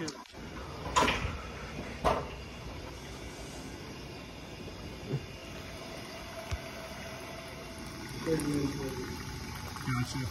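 Two sharp knocks about a second apart from handling gear in a ceiling space, over a steady background hiss, with a brief murmured voice near the end.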